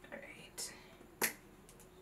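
A single sharp click a little over a second in, followed by a few small ticks, from a bullet lipstick tube being handled, with faint breathy mouth sounds before it.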